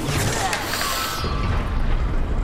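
Lightsaber-duel sound effects from an animated episode: a lightsaber grinding against another blade in a spray of sparks, a dense, loud crackling and grinding that is brightest in the first second.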